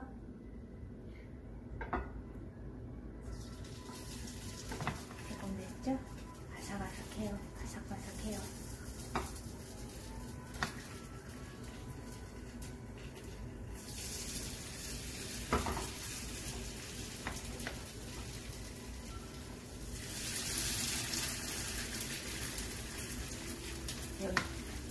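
Grated potato and vegetable pancake batter (gamja-yachae-jeon) sizzling in plenty of hot oil in a frying pan as spoonfuls are dropped in. The sizzle grows louder in steps as more portions go in, loudest near the end. A few sharp knocks of the utensils are heard along the way.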